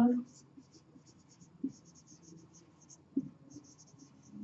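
Marker pen writing on a whiteboard: a long run of short, high scratching strokes as a word is written out letter by letter.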